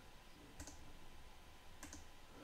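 Two faint computer mouse clicks, one about half a second in and one near the end, over near silence.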